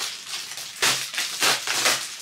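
Plastic poly mailer bag crinkling as it is torn open by hand, with three louder rustling tears in the second half.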